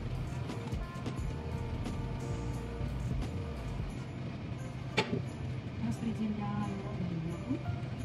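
Background music with steady sustained tones, and a single sharp click about five seconds in.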